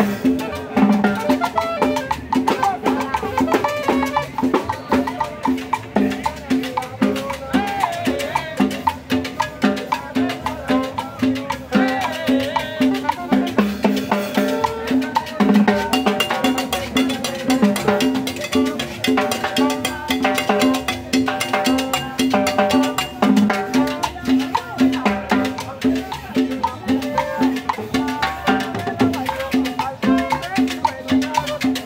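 A live salsa band playing a dance tune in the open air, with congas and timbales keeping a dense, steady rhythm under repeating low notes and melody.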